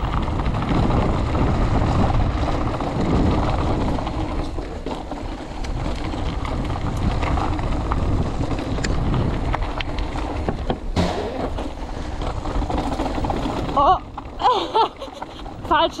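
Mountain bike rolling fast down a dirt and gravel trail: steady tyre roar and rattling over the rough surface, mixed with wind rushing over the action camera's microphone, with a few sharp knocks from bumps. Near the end a rider laughs and says "yeah".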